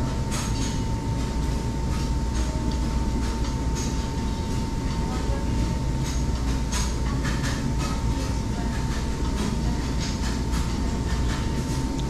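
Steady low rumble and hum of restaurant room noise, with a thin continuous whine and scattered light clicks and clatter.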